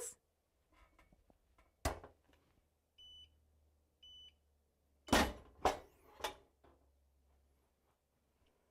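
Heat press pre-pressing a garment: a clunk as the heat platen is locked down about two seconds in, two short high beeps from its timer a second apart ending the pre-press, then a few clunks as the press is released and opened.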